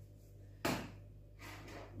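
A single sudden clack with a brief rustle that fades within about a second: a small handheld detector being handled and set down on a wooden table, over a faint steady low hum.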